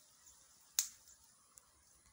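A single sharp click a little under a second in, with a much fainter tick later, over a quiet background.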